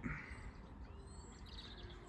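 Quiet outdoor background ambience with a brief, faint bird chirp about one and a half seconds in.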